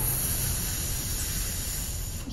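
A steady rushing, hiss-like noise from the anime episode's soundtrack, easing a little toward the end.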